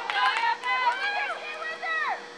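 Several high-pitched voices shouting and calling over one another across an open sports field, with a faint steady hum underneath.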